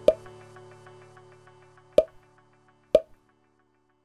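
Music fading out, with three short pop sound effects of an animated end screen: one at the start, one about two seconds in and one about three seconds in.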